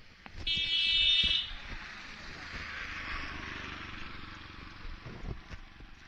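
A vehicle horn sounds once for about a second, near the start, followed by a few seconds of hissing road noise.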